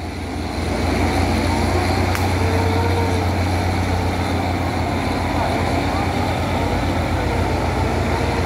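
Wheeled log skidder's diesel engine running steadily under load as it drags a large log, with a deep low hum that grows a little louder about a second in.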